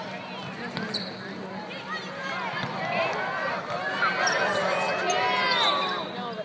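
Basketball players' sneakers squeaking on the hardwood court, the squeaks coming thick and fast from about two seconds in, with a ball bouncing and voices around.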